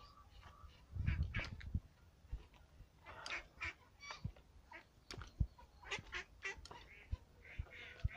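A group of young ducks giving scattered short calls as they move along together, with a few sharp knocks in between.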